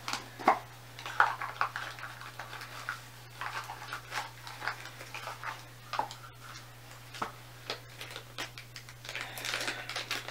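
Irregular small clicks, taps and rustles of a small jewelry gift box being opened and a ring being taken from its little velvet pouch.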